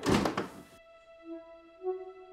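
A loud thunk in the first second, over soft film-score music of held tones, with two low notes coming in near the end.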